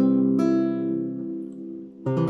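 Acoustic guitar strumming a C major chord: two strums less than half a second apart, then the chord rings and fades before another strum near the end.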